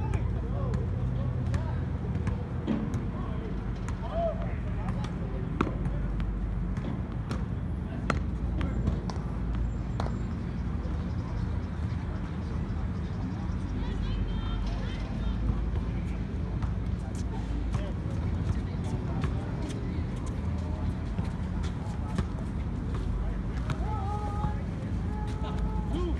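Steady low rumble of road traffic, with a bus passing, and scattered sharp knocks from tennis balls being struck and bouncing on the hard court. Faint, indistinct voices come and go.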